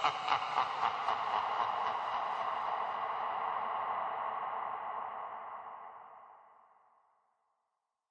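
The closing tail of a chillwave electronic track: a sustained, echoing synth wash centred in the mid range that holds steady, then fades out to silence about seven seconds in.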